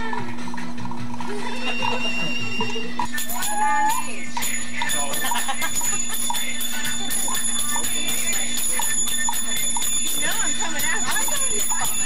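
Dance music with a steady jingling, bell-like metallic rhythm, under indistinct voices and laughter from onlookers.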